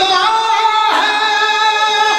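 A man singing a recitation in long, high held notes through a microphone, the pitch stepping up to a higher note about a second in.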